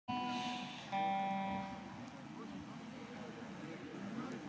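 Two sustained single notes from a stage instrument being warmed up before the song, the first at the very start and the second about a second in, each fading away over about a second. A low murmur of voices follows.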